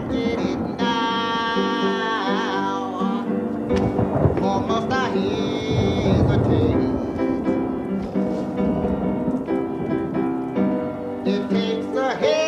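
A man singing a slow song in long held, wavering notes, accompanied on the piano.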